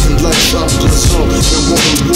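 Hip-hop track: a drum beat with a rapped vocal over it.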